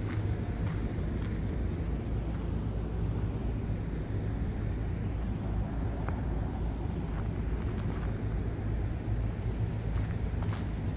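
Steady low hum and rumble of the city's background noise, with a few faint ticks.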